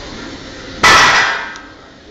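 A 120 kg, 10-inch strongman log with weight plates on its ends dropped from waist height onto the gym floor: one loud crash a little under a second in, dying away over about half a second.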